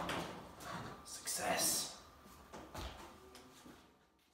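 The echo of a heavy thump dying away in a garage as a snowmobile comes back down onto its skis, followed by a few faint clunks and shuffles.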